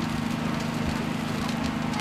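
Steady hum of a portable power generator's engine running at constant speed, with faint crackling from a large wood bonfire.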